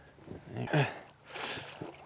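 A short splash of water a little past halfway, as a hooked rainbow trout is landed in a net beside a small boat.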